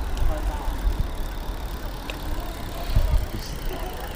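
Wind rumbling on the microphone of a road bike being ridden, with tyre noise on the road and a couple of bumps, about a second in and near three seconds.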